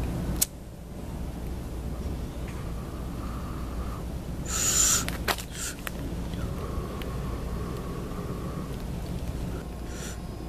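Outdoor ambience: a steady low rumble, with a click early on and a short loud hiss about four and a half seconds in, followed by another click. Faint steady mid-pitched tones are heard twice.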